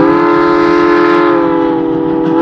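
Chime whistle of Virginia & Truckee steam locomotive No. 29 giving one long, steady blast, a chord of several notes sounding together.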